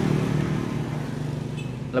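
Motorcycle engine idling with a steady low hum.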